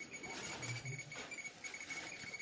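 Radiation detector clicking faintly and irregularly, with a faint steady high tone behind: the random counts of a contaminated floor strewn with firefighters' clothing.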